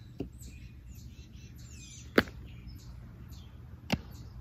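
Birds chirping faintly over a steady outdoor background, with one sharp smack about two seconds in and a smaller one near the end.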